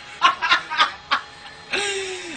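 A person snickering: several short bursts of laughter in the first second or so, followed near the end by a steadier noisy stretch with a held tone.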